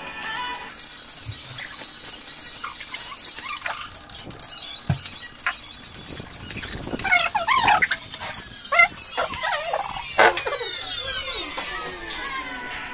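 Plastic cling film being pulled off its roll and stretched around a freshly tattooed arm, giving wavering high squeaks and crackles. They are loudest in the second half, over background music.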